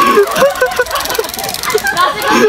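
Several people talking at once, their voices overlapping in a steady chatter.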